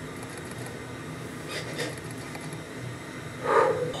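Quiet room with a few faint soft knocks as a person moves close to the microphone, then a short breathy vocal sound from a woman near the end.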